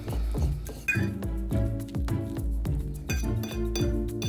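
Background music with a steady beat, over a metal fork clinking and scraping against a bowl as avocado is mashed in it.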